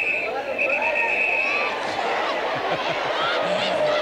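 Football crowd murmuring and calling across the stadium, with a steady high whistle that sounds twice in the first couple of seconds.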